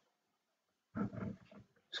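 Near silence for about a second, then a short, low, creaky vocal sound from a person, a hesitation noise just before speech resumes.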